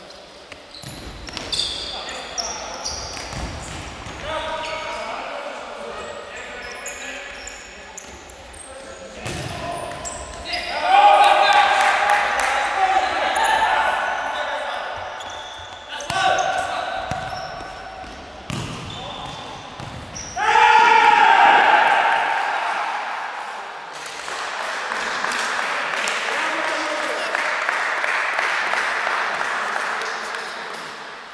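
Indoor futsal play in an echoing sports hall: the ball being kicked and bouncing on the hard court floor, with players shouting. The loudest shouts come about a third of the way in and again around two thirds in.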